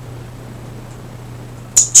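Room tone: a steady low electrical-sounding hum with faint hiss. A woman's voice starts up near the end.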